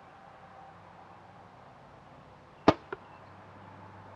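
Martin compound bow shot: one sharp crack as the string is released, then a fainter click about a quarter second later as the arrow strikes the target.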